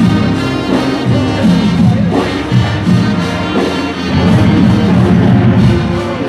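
Marching band playing a tune, its brass section carrying the melody.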